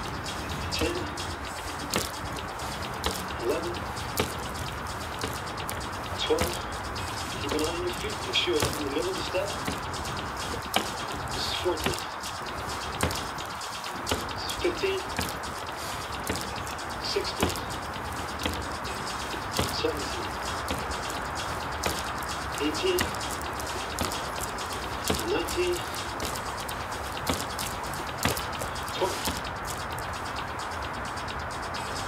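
Indistinct voice heard in short snatches over a steady background hiss, with occasional brief bird chirps.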